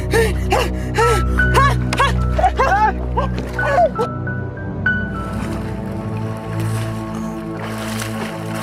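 Dramatic background music with sustained low chords. Over its first half a woman wails in repeated rising-and-falling cries that stop at about four seconds. Water splashing starts just before the end.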